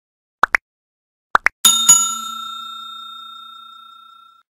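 Subscribe-animation sound effects: two quick pairs of clicks, then a single bell ding about a second and a half in that rings on and slowly fades away.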